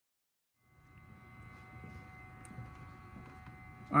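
Total silence for the first moment, then faint steady room tone: a low hum with several thin, steady high-pitched tones like an electrical whine.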